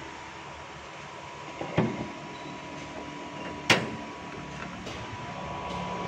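Steady hum with a faint whine from the Toyota Innova Zenix hybrid standing in electric mode with its petrol engine off. Two sharp knocks, about two seconds apart, come as the bonnet is handled and lowered.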